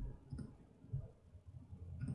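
A few faint clicks and low knocks from a computer mouse being clicked and moved on a desk.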